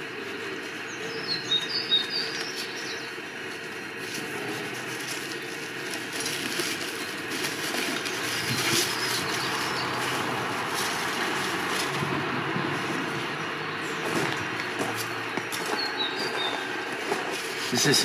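Rustling and scraping as gloved hands dig through the ash and debris inside a steel oil-drum pit-fire kiln and lift out a fired pot, with small birds chirping faintly now and then.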